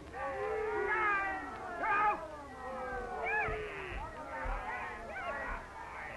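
A ringside crowd of spectators yelling. Several voices overlap in long calls that rise and fall in pitch.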